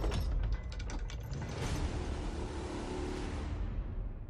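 Cinematic title-card sound effect: a quick run of sharp mechanical clicks and ratcheting in the first second, then a swelling grinding whoosh over a deep rumble that dies away at the end.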